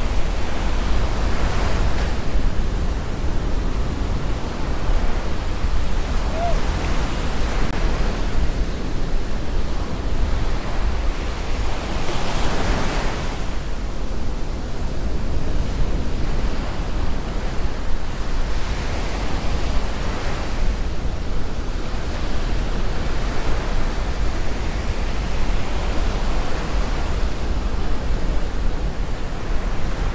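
Surf breaking on a sandy beach: a steady wash of waves that swells several times as sets come in, with wind rumbling on the microphone.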